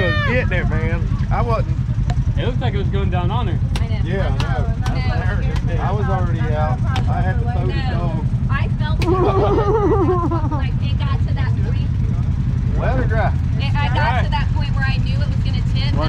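An engine idling steadily with a low, even rumble, under several people talking.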